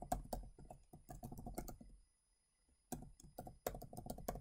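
Typing on a computer keyboard: a run of quick keystrokes, a pause of almost a second about halfway through, then more keystrokes.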